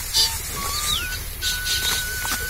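Hand sickle cutting through dry rice stalks: short crisp swishes every half second or so. A thin held whistle-like tone runs alongside, stepping up in pitch about half a second in.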